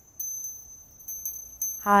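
Small metal bells hanging on strings from a branch, tinkling: several light, high strikes that keep ringing. A woman's voice begins near the end.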